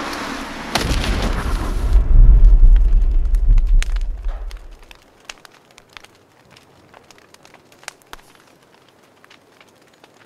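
An explosion: a rush of noise gives way to a sudden blast about a second in, then a deep rumble that swells and dies away by about five seconds. Faint scattered crackles follow.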